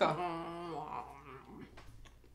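A person's voice drawing out a long, pitched sound for about a second, then dropping away to a low hush with a few faint clicks.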